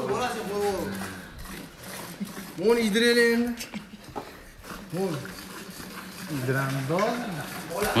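Milk squirting from a cow's teats into a part-filled metal pail during hand-milking, under quieter men's voices talking nearby.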